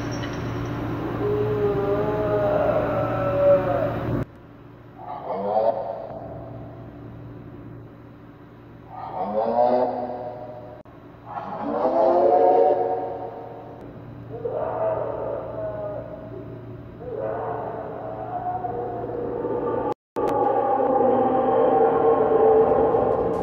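Eerie wailing cries: a string of long calls, each sliding up and down in pitch, with a low steady hum under the first few seconds that cuts off about four seconds in.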